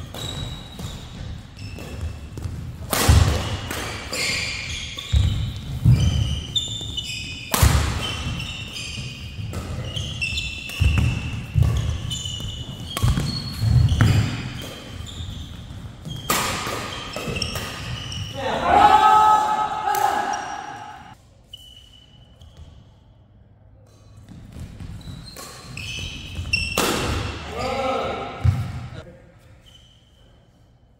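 Badminton doubles rally in an echoing hall: rackets striking the shuttlecock and shoes squeaking and thudding on the court floor. A player shouts about 19 seconds in, and voices come again near the end.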